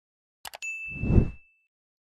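Sound effects of a subscribe-and-bell animation: two quick mouse clicks, then a single notification-bell ding ringing for about a second. Under the ding, a low whoosh swells and fades and is the loudest part.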